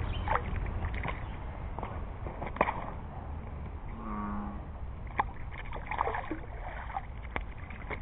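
A small rainbow trout on the line splashing lightly at the surface as it is drawn into a landing net: scattered short splashes and knocks over a low steady background rumble. About four seconds in comes a brief low hum.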